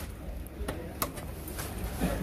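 An XLR cable connector clicking into a power amplifier's input socket, one sharp click about a second in, with a few lighter ticks around it over a steady low hum.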